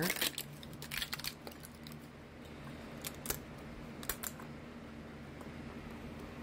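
Scattered light plastic clicks and taps from a 3D-printed articulated dragon being handled and pried at on a textured PEI build sheet, a few separate clicks and a quick cluster a little past the middle, over a steady low hum.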